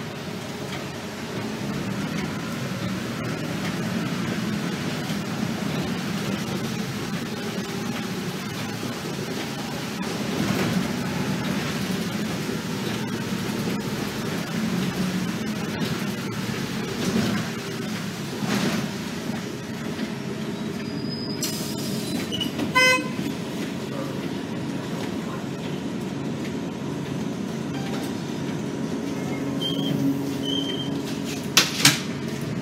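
Interior of an RTS transit bus under way: steady engine and road rumble. About two-thirds of the way through, a short hiss is followed by a brief buzzy toot.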